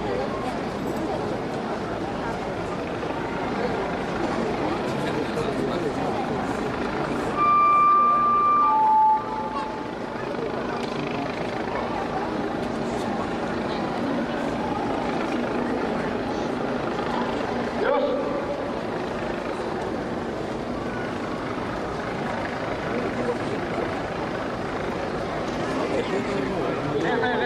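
A loud two-note signal over a steady murmur of crowd chatter, a shipyard signal in the ship-launch sequence. About seven and a half seconds in, a high steady note holds for just over a second, then a lower note sounds briefly.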